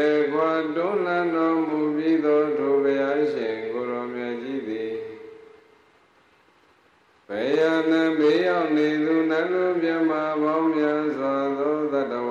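A Buddhist monk chanting into a microphone, one male voice holding long, steady notes with small slides in pitch. Two long phrases, with a pause of about two seconds between them about halfway through.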